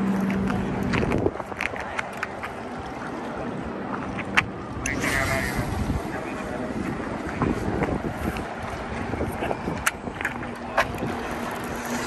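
A heavy surf rod is cast with a conventional reel in the wind. A brief whirring hiss comes about five seconds in as line pays off the spinning spool, and a few sharp clicks follow from handling the reel. A low steady hum stops about a second in.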